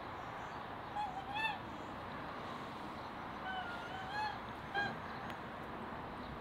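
Domestic geese honking: two short honks about a second in, then three more between the middle and near the end.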